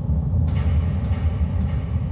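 A loud, deep rumble cuts in abruptly and holds steady, rough in texture, with a fainter hiss joining above it about half a second in.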